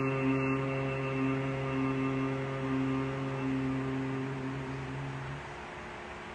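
A man's long hum held on one low, steady pitch with the mouth closed, like the closing 'mmm' of an Om chant, slowly fading and stopping about five seconds in.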